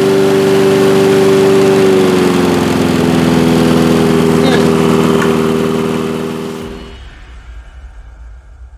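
Honda push mower's four-stroke engine running steadily at full throttle with a freshly adjusted carburettor and governor, running perfectly. Its pitch drops slightly about two seconds in, and the sound fades out about seven seconds in.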